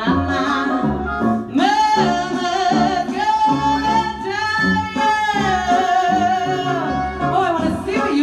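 A singer holds one long belted note for about four seconds, wavering in vibrato near its end, with shorter sung notes before and after it. A live band accompanies her, with a steady pulsing bass line underneath.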